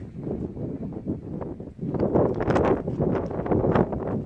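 Footsteps crunching on stony ground, with wind on the microphone; the steps get louder about halfway through.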